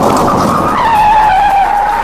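Car tyres screeching: a long, wavering squeal over a rush of noise that cuts off suddenly at the end.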